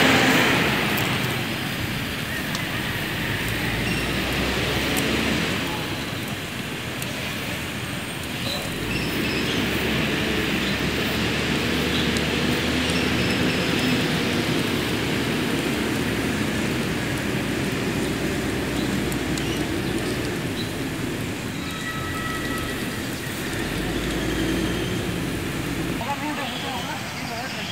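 Large open-air pyre burning, a steady rushing noise that holds without a break.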